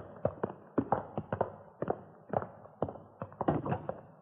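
Hurried footsteps on a hard floor: an irregular run of sharp steps, about three to five a second.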